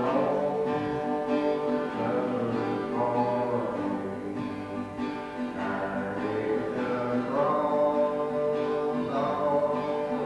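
Live gospel song: acoustic guitars strumming under voices singing long held notes in harmony.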